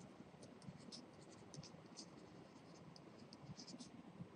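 Faint handwriting: a pen tip scratching and ticking in short, irregular strokes, several a second, over a low background hiss.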